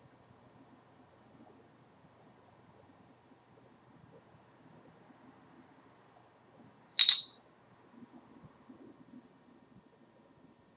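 Wheat beer trickling faintly from a swing-top glass bottle into a foamy glass, with one sharp, bright clink of glass about seven seconds in.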